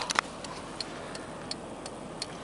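A couple of sharp clicks at the start, then light, even ticking about three times a second inside a car's cabin.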